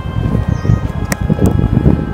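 Wind buffeting the microphone of a phone mounted on a moving bicycle: a gusty low rumble, with two sharp clicks around the middle. Faint background music runs underneath.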